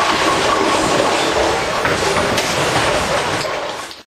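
Bowling alley din: a steady rumble of balls rolling and pinsetter machinery, with a few sharp clatters of pins, easing off slightly near the end and then cutting off suddenly.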